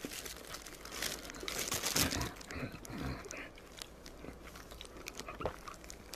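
Close-miked chewing and crunching of fried chicken, a run of crisp bites loudest in the first half that thins out and quietens after about three and a half seconds.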